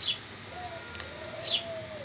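Faint bird calls: a short note, then one longer, gently arching call, with two quick high downward chirps.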